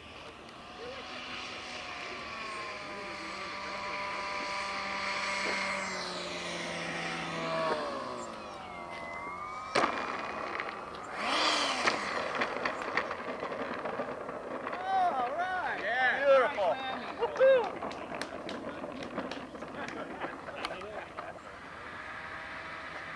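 A Dynamax 127 mm electric ducted fan whining, its pitch falling about six to nine seconds in as the throttle comes back for landing. A sharp knock follows, the model's wheels touching down on the asphalt. Then people's voices call out, loudest near the end.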